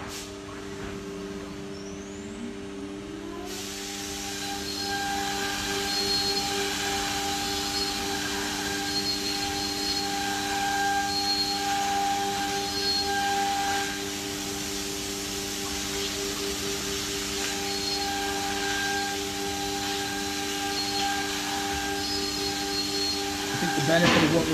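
HOMAG Centateq N-300 CNC nesting router's spindle spinning up with a rising whine over the first few seconds. It then runs steadily under an even hiss, with short higher tones coming and going.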